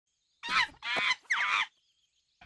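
Three short, high, squeaky vocal calls with sliding pitch, a cartoon character's voice.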